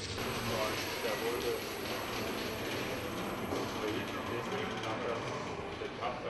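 Indistinct voices talking over the steady running noise of automated warehouse machinery.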